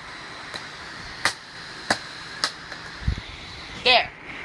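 A wooden stick striking DVD cases several times, about five sharp cracks about half a second to a second apart, with a duller thud about three seconds in. A short, loud vocal cry comes at the very end.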